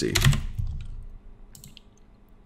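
A few faint computer keyboard keystrokes, coming after the end of a spoken word.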